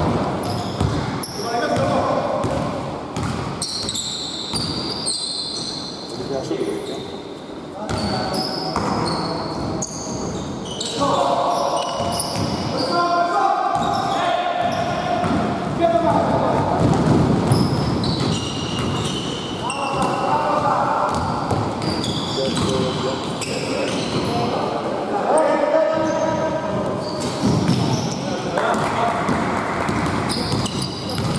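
Basketball dribbling on a hardwood gym floor, with running footsteps, short high sneaker squeaks and players' shouts, all echoing in a large hall.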